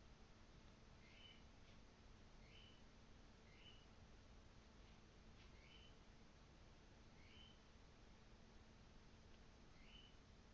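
Near silence: room tone, with a faint short chirp that recurs about every one to two seconds.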